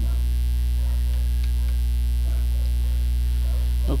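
Steady electrical mains hum with its even overtones, with a few faint key clicks from a computer keyboard.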